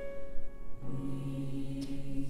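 Mixed-voice choir singing held chords. A few tenths of a second in, the first chord fades; a second chord comes in just under a second in with strong lower voices and is held.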